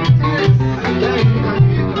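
Classical nylon-string guitar playing an instrumental passage of a Peruvian vals (criollo waltz). Low bass notes are plucked about three times a second under higher melody notes.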